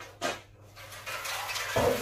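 A long metal car body part being handled and turned over: a light tap, then metal scraping and rattling that ends in a knock near the end.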